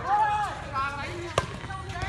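Players calling out during a rally of air volleyball, and a single sharp smack of the light air-volleyball ball being struck about one and a half seconds in.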